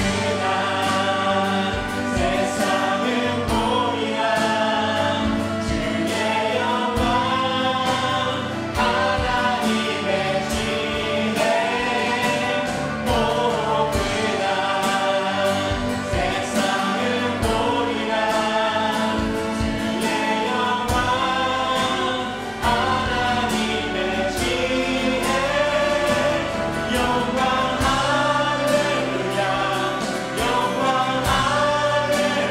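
Worship band and four-voice praise team, men and women, singing a Korean praise song together over acoustic guitar and a steady beat.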